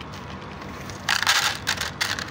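Dry cat kibble pouring from a plastic jar into a plastic tray: a short rattling rush about a second in, followed by a few scattered clicks of pellets landing.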